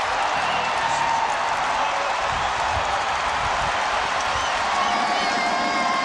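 Stadium crowd cheering and applauding a touchdown catch, a steady wash of crowd noise.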